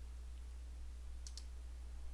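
A quick pair of faint computer mouse clicks about a second in, over a steady low electrical hum and microphone hiss.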